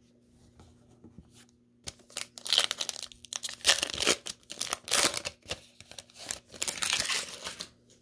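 Foil wrapper of a Panini Chronicles basketball card pack being torn open and crinkled by hand. The tearing and crackling start about two seconds in and go on until shortly before the end.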